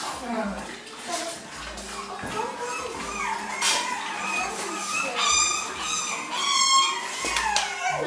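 French bulldog puppies giving short, high-pitched cries, repeated several times in a cluster about five to seven seconds in, amid voices.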